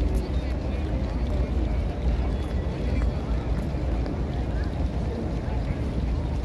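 Outdoor crowd ambience: scattered voices of many people walking about, under a steady low rumble of wind on the microphone.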